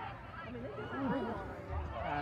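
Indistinct, overlapping chatter of spectators talking in the stands; no single voice stands out.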